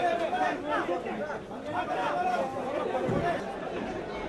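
Several people talking at once: overlapping, indistinct chatter.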